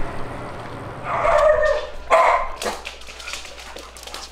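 A dog barking twice, a longer bark about a second in and a short one about two seconds in, followed by quick light clicking of dogs' claws on a hardwood floor.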